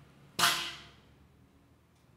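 A single sharp, gunshot-like crack about half a second in, dying away over about half a second: a staged gunshot in a spoken performance.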